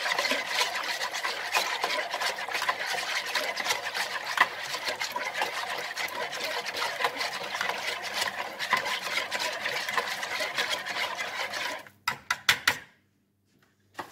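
Wire whisk beating water, olive oil, vinegar and salt in a plastic bowl: a fast, continuous swishing and clicking of the wires through the liquid and against the bowl. It stops about twelve seconds in, followed by a few last taps.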